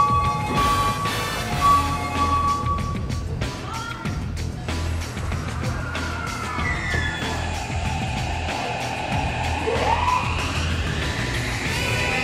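Background music over a subway platform's low rumble. In the second half an electric train's motor whine rises in pitch as the train pulls out.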